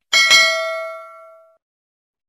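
Notification bell ding sound effect: a bell-like chime struck twice in quick succession, ringing out and fading over about a second and a half.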